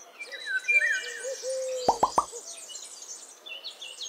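Birdsong: several birds chirping and trilling high up, over a lower wavering hooting call. Two or three quick, loud upward sweeps come about two seconds in.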